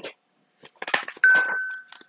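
Paper rustles and clicks as a picture-book page is turned, then a single light clink that rings on as one clear tone, fading over most of a second.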